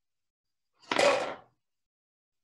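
A glass marble rolls down a short plastic ruler ramp and knocks into an upturned plastic cup, pushing it a few centimetres across a wooden tabletop. It is one brief clatter and scrape, about half a second long, starting about a second in.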